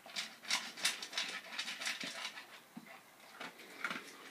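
A dog with its mouth in a stainless steel bowl, eating or drinking: a quick, irregular series of short wet, crunchy sounds, about three a second.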